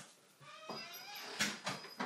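Door hinge creaking in a bending, drawn-out squeal as the back door swings shut, then two sharp knocks near the end as the door closes and latches.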